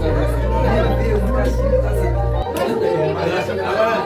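Many people talking and exclaiming over one another in a room, over background music with a steady deep bass that cuts off about two and a half seconds in.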